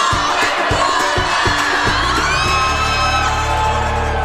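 A group of young women cheering and shouting together, with high whoops rising in pitch about halfway through, over upbeat background music.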